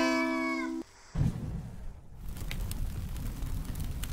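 The end of a short intro sting: a held, pitched sound that cuts off abruptly just under a second in. After a brief gap comes a low rumbling noise.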